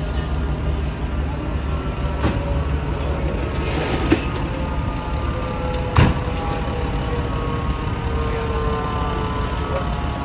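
Diesel engine of a parked FDNY fire engine idling with a steady low rumble and faint tones that drift slowly lower. A sharp knock comes about six seconds in, with a smaller one around four seconds.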